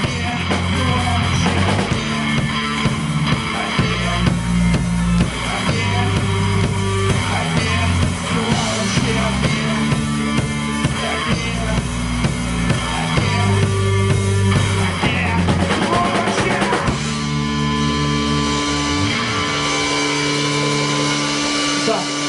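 Live rock band playing loudly: drum kit, bass and electric guitar. Near the end the drumming drops away and long held guitar and bass notes ring on.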